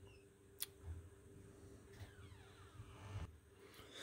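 Near silence: room tone, broken by one faint sharp click about half a second in and a few soft low bumps.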